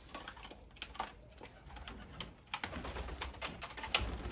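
Roller pigeons moving about a loft: scattered light clicks and taps, with a low rumble joining about two and a half seconds in.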